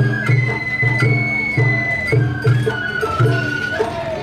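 Festival float music (Sawara bayashi): a bamboo flute playing long high held notes that step up and down over a steady beat of low taiko drum strokes, about two a second.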